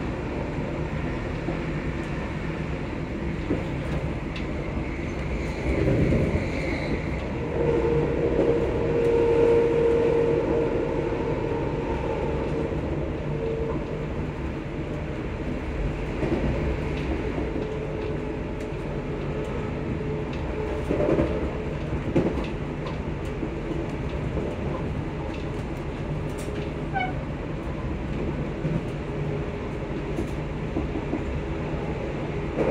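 Passenger train running, heard from inside the carriage: a steady rumble of wheels on rail. A held whine sounds for several seconds from about eight seconds in, and a few louder thumps come along the way.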